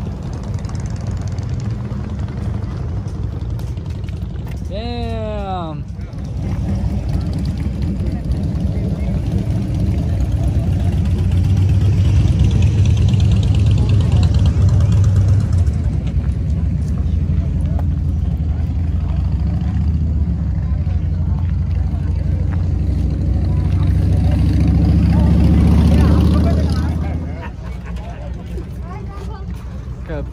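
Motorcycle engines running among the parked bikes, a steady low rumble that grows louder around the middle and again before falling away near the end, with people's voices around it.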